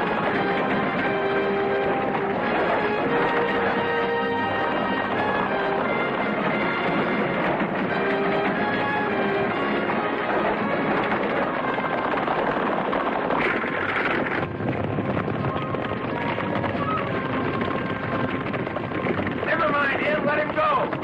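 Film score music with long held notes over a dense backing, with a short burst of noise about two-thirds of the way through.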